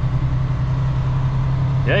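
Western Star semi truck's diesel engine heard from inside the cab, a steady low drone.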